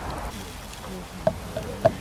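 A flying insect buzzing briefly close by, with two sharp clicks late on that are the loudest sounds.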